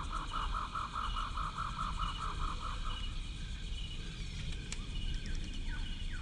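Outdoor ambience: an animal call pulsing rapidly, about four to five pulses a second, stops about three seconds in, over a steady low rumble. A short higher call repeats under it, with one click and a few short falling chirps near the end.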